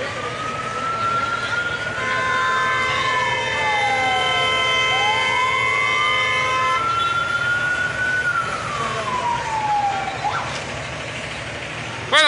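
Emergency vehicle siren wailing, slowly rising and falling about every five seconds, then cutting off with a short upward chirp near the end. A steady chord-like horn tone sounds over it for about five seconds in the middle, above a low rumble.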